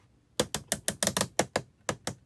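Plastic ratchet joints of a large action-figure display base clicking as its arm section is bent backward. About a dozen quick clicks follow one another over a second and a half.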